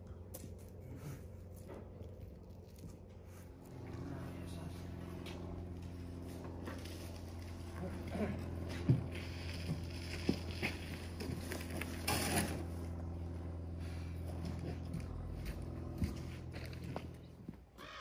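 Faint scraping and knocking of a wooden float being drawn over a sand bedding layer to level it, with one short louder scrape about two-thirds of the way through. Under it, a steady low motor hum starts about four seconds in and fades near the end.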